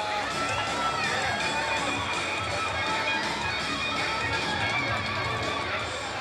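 Music with guitar plays over a crowd's mingled voices at a steady level.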